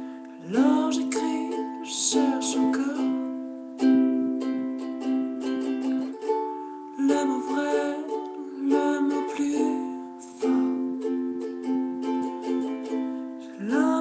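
Kala ukulele strummed in a steady rhythm of chords, with a man's voice singing along in stretches.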